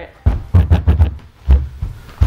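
A knife being pressed down through a raw head of cabbage on a plastic cutting board: crisp crunching and cracking of the leaves, with several heavy low thuds as the blade and hand bear down against the board.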